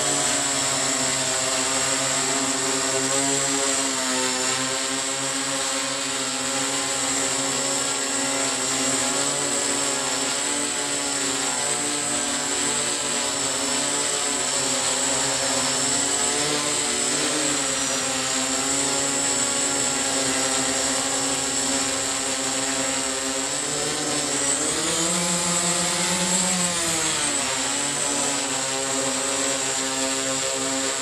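The eight electric motors and propellers of a large OFM GQuad-8 octacopter hovering, a steady many-toned buzz. About 24 seconds in, the pitch dips and then climbs back over a few seconds as the motors change speed against a hand pulling the craft down by its landing gear, fighting to hold position.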